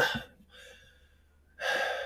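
A man's short, audible intake of breath about a second and a half in, after a trailing 'uh' and a brief pause.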